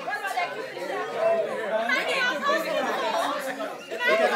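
Chatter of a group of people, many voices talking over one another with no single clear speaker.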